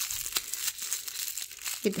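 Clear plastic wrapping crinkling as fingers peel and pull it off small metal-rimmed photo frames: a run of small irregular crackles and clicks.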